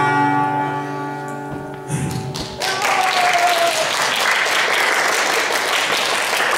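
An acoustic guitar's final chord rings out and fades, then audience applause starts about two and a half seconds in and continues, with a brief falling tone over its start.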